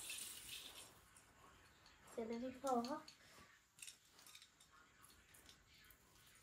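Faint rustling and a few light clicks of a strand of Christmas string lights being handled, the rustle fading out in the first second. A short vocal sound from a child about two seconds in.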